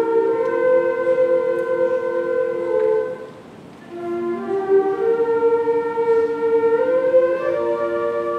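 High school concert band, its flutes, clarinets and saxophones playing slow, sustained chords. The sound breaks off for under a second about three seconds in, then the band comes back in on a new chord.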